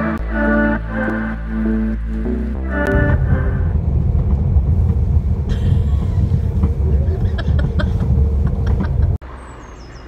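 Background music for about the first three seconds, then the steady low rumble of a moving passenger train heard from inside the carriage, which cuts off abruptly near the end.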